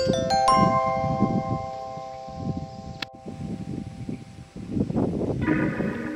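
Background music with ringing, bell-like tones that are held and fade. A sharp click comes about halfway through, and a new passage of the music begins near the end.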